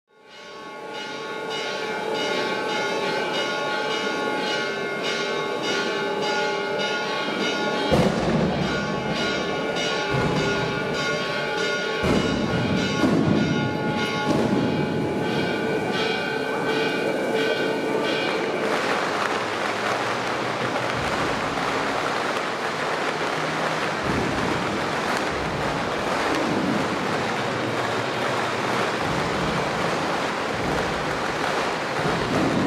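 Church bells ringing together as a dense cluster of sustained tones, with a few loud bangs a third of the way in. About two-thirds of the way through the bells give way to a steady rushing noise.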